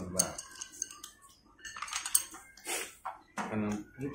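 Chopsticks and crockery clinking lightly as food is picked from a shared platter and bowls, a few scattered short sharp clicks, with a brief murmur of voices near the end.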